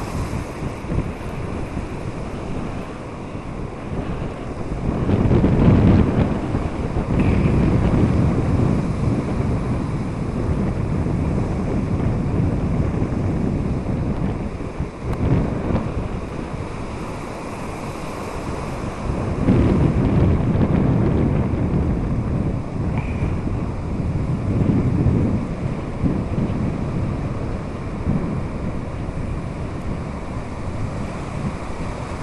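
Strong wind buffeting the microphone in gusts, over the steady wash of sea surf.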